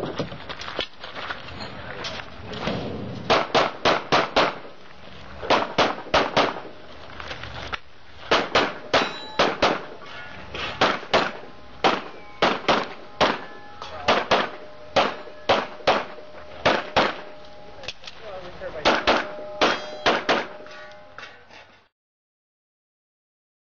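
Pistol shots fired in quick strings of two to five with short pauses while the shooter moves through a timed stage. Some shots are followed by steel targets ringing, mostly in the middle and near the end. The run ends shortly before the sound fades out.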